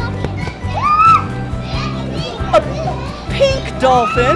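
Children playing, with short excited high-pitched voice calls, over background music.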